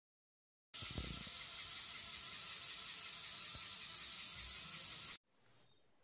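A steady hiss, brightest in the high range, with a few faint low thumps. It starts abruptly under a second in and cuts off suddenly about a second before the end.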